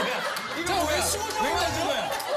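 Several people talking over one another, with background music underneath.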